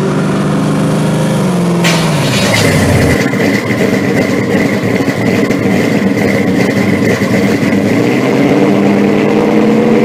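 Supercharged V8 of a second-generation Chevrolet Camaro running as the car drives by, its pitch falling about two seconds in. A louder, rougher engine sound with a steady high whine then carries on.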